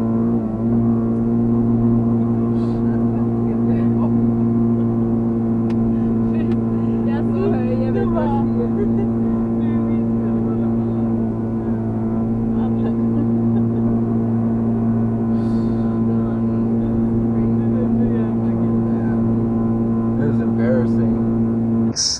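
Ford Focus four-cylinder engine held at a steady, high-pitched drone near its 7,000 rpm redline while the car moves at about 30 mph. The engine is stuck in first gear because of a faulty transmission.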